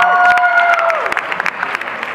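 Audience applauding and cheering, dying down a little toward the end.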